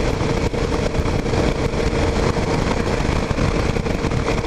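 A 2009 Kawasaki KLR 650 single-cylinder motorcycle cruising at highway speed: steady wind and road rush, with a faint steady hum from the bike running underneath.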